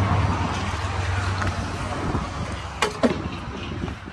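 Low, steady hum of a nearby vehicle's engine, fading away, with two sharp knocks close together about three seconds in as the wooden sewing-machine cabinet is handled.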